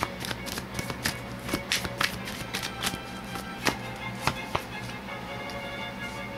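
Tarot cards being shuffled by hand: irregular sharp clicks, a few louder than the rest, over steady soft background music.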